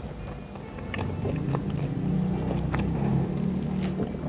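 Close-miked chewing of a mouthful of Burger King Whopper, with several sharp wet mouth clicks along the way.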